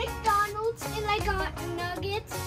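Light, upbeat background music with a high voice singing over it.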